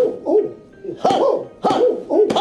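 A man's voice making a string of short hooting "ooh" sounds, about four in two seconds, each rising and then falling in pitch.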